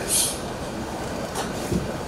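Steady background noise of a conference hall picked up through the microphones and sound system, with a brief hiss at the very start.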